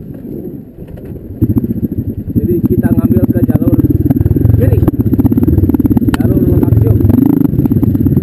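Dirt bike engine riding a muddy single-track rut. It is fairly quiet at first, then gets much louder about a second and a half in as the throttle opens, and keeps running hard with a fast, even firing beat.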